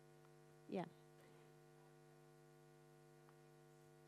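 Near silence with a steady low electrical hum, like mains hum in the audio line; a single short spoken 'yeah' about a second in.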